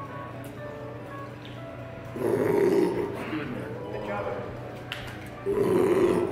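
Background music and indistinct voices, broken by two louder, rough vocal outbursts: one about two seconds in, lasting nearly a second, and another near the end.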